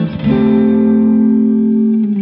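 Kiesel Vader VM6 headless multiscale six-string electric guitar, played on its neck pickup with the coil split. A quick run of notes ends, then after a short gap a note is picked and held, ringing steadily.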